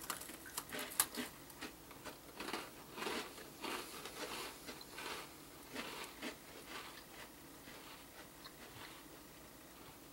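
People biting into and chewing hard, flat round butter cookies: irregular crisp crunches close to the microphone, frequent at first and thinning out toward the end.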